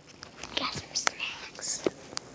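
A person whispering a few breathy, unvoiced words, with a couple of sharp clicks from the phone being handled.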